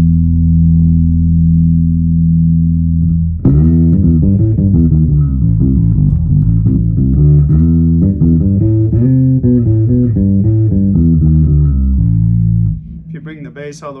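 MG Bass JB1 neck-through five-string electric bass with Bartolini pickups and preamp, played fingerstyle through a Demeter bass head and Ampeg cabinets: a long held low note, then from about three and a half seconds a busy run of plucked notes that ends on another held note. The playing stops near the end, when a man's voice begins.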